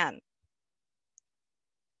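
A woman's voice trails off, then near silence broken by one faint, short click about a second in.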